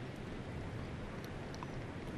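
Low, steady outdoor background noise, an even hiss with no distinct event.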